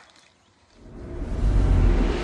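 Scene-transition sound effect: a rising whoosh with a deep rumble that swells over about a second and cuts off abruptly.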